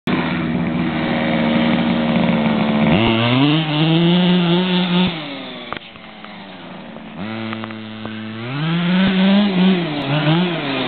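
MCD RR Evo 3 large-scale RC buggy's two-stroke petrol engine, running steadily at first, then revving up sharply about three seconds in and dropping back a couple of seconds later. It revs again from about seven seconds, rising further and ending in quick blips of throttle.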